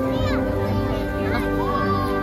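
Gentle background waltz music with held notes, over the voices of a crowd of children playing and calling out, with high-pitched shouts near the start and again past the middle.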